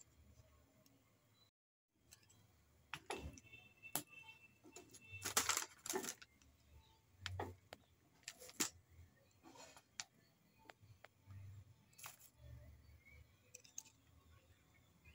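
A spatula pressing plastic bottle caps on baking paper in a metal pan, giving scattered clicks, scrapes and paper crinkling, with a louder scraping burst about five seconds in. The caps are being pressed as they soften and start to stick in the heat.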